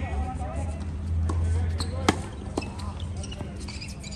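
Tennis ball impacts on a court, racket hits and bounces: a few sharp pops, the loudest about two seconds in.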